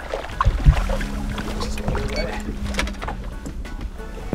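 Background music over the sound of a small fishing boat on open water, with wind rumbling on the microphone. A knock on the boat comes about half a second in, and a steady hum runs through the middle.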